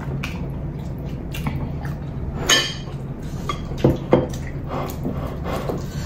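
Close-miked eating sounds: short wet mouth clicks and smacks while eating rice and curry by hand, with light taps of fingers and dishes on the plates. The sharpest click comes about two and a half seconds in, and a pair near four seconds, over a steady low hum.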